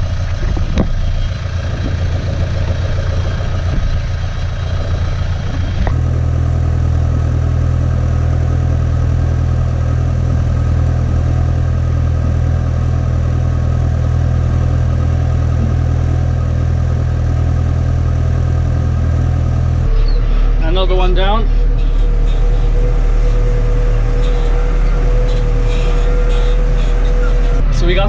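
Tractor engine running steadily under a constant hum, its sound shifting about six seconds in and again about twenty seconds in.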